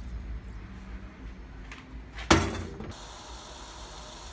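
A stainless-steel kettle clanking once about two seconds in as it is handled, a single sharp knock with a short ring after it.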